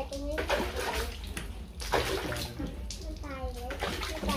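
Water splashing and sloshing in a bucket as wet sandpaper is dipped and rinsed during wet sanding of a headlight, with a voice talking over it.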